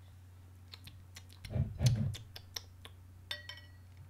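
A person sipping beer from a stemmed glass: small wet mouth clicks and a couple of low gulps in the middle, the loudest part. Near the end comes a short ringing clink of glass.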